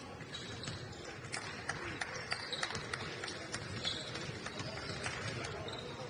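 Live basketball court sounds: a ball bouncing and sneakers tapping and briefly squeaking on the hardwood floor, irregular knocks over faint voices.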